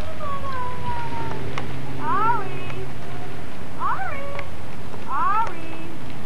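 A baby's high-pitched vocal squeals: one long falling whine, then three short rising-and-falling squeals about a second and a half apart.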